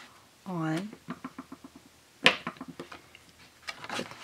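Scissors and card stock handled on a tabletop: light ticks and taps, with one sharp click about halfway through, after a brief hummed 'mm' from the crafter.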